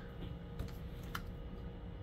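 Cellophane-wrapped cigars being handled in a wooden humidor: a few faint light clicks and rustles, two of them sharper, about half a second apart near the middle.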